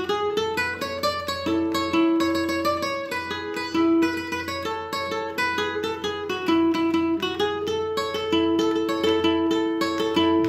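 Nylon-string classical guitar played fingerstyle: a quick run of plucked melody notes over repeated lower notes.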